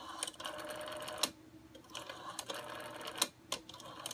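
Model 500 rotary phone's dial being pulled round and spinning back under its governor: a steady whirr about a second long that ends in a sharp click, twice, with a few lighter clicks after.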